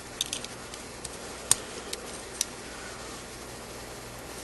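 Scattered short ticks and scrapes of an X-Acto knife shaving the cut edges off a small plastic Rubik's Cube piece. The loudest tick comes about a second and a half in, and none follow after about two and a half seconds. A low steady hum runs underneath.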